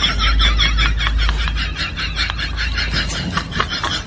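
Dry wheat straw rustling and crackling in a quick run of short crunches as it is trampled and pulled at.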